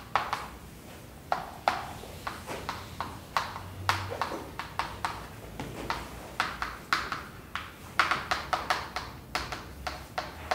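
Chalk tapping and scratching on a blackboard as formulas are written: a run of short, sharp taps and strokes, coming thickest in a quick cluster about eight seconds in.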